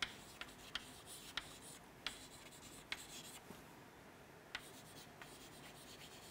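Chalk writing on a chalkboard, faint: soft scratching strokes punctuated by sharp, irregular taps as the chalk strikes the board, with a short lull in the middle.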